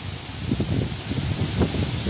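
Wind gusting on the microphone: an irregular low rumble that picks up about half a second in, over a steady outdoor hiss of breeze in foliage.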